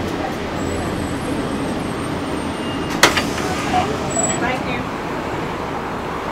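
City bus running along the road, heard from inside the passenger cabin: a steady rumble of engine and road noise, with a single sharp click about three seconds in.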